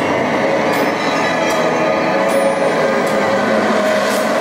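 Horror-attraction ambient soundscape played over loudspeakers: a loud, steady drone, dense and noisy, with many held high tones and a few faint ticks.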